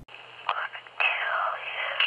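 A man whispering "gonna kill you" on an old telephone-call recording attributed to the Golden State Killer. The voice is tinny and narrow, with a steady low hum under it, and it grows louder about a second in.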